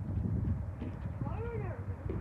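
Low rumble of wind or handling on a phone microphone, with one short pitched call that rises and then falls about a second and a half in.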